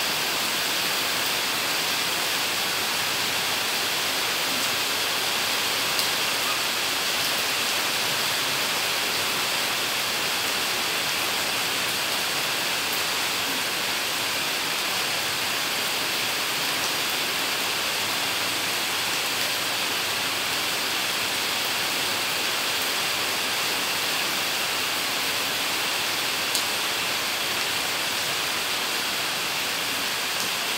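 Steady rain falling on wet tiled paving: an even, unbroken hiss.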